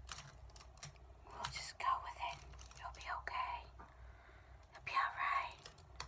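Quiet whispered muttering to herself, with scattered light clicks and taps of makeup brushes being handled and sorted in with the others.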